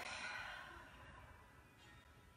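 A woman's long, audible exhale taken as a guided yoga breath: a breathy sigh that fades away over about a second and a half.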